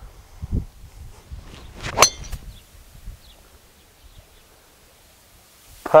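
A driver striking a golf ball off the tee: one sharp metallic crack with a brief ringing, about two seconds in.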